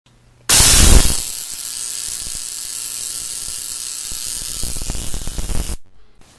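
Tesla coil of a homemade Lakhovsky multiwave oscillator running, a loud, steady electrical buzz-hiss from its discharge. It switches on suddenly about half a second in, loudest for the first half second, and cuts off abruptly near the end.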